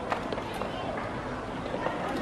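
Indistinct voices murmuring, with a few light clicks in the first half.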